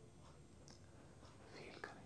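Near silence: quiet room tone with faint, regularly spaced ticks, and a brief soft breathy sound, like a breath or whisper near the microphone, shortly before the end.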